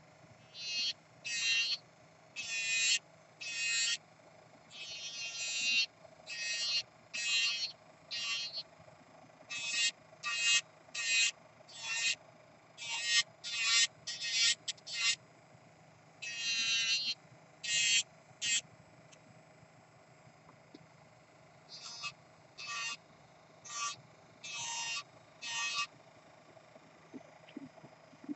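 Kupa Manipro electric nail drill (e-file) filing an acrylic nail: a series of short high-pitched grinding rasps, about one a second, as the spinning bit is touched to the nail in stroke after stroke, pausing for a few seconds about two-thirds through. A faint steady whine runs underneath.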